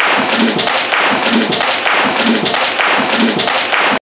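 A group of people clapping hands loudly in a steady, even rhythm.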